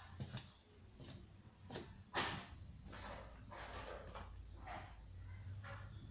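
Faint rustling and handling noises from packing plant seedlings into a box: several short scuffs, the clearest about two seconds in.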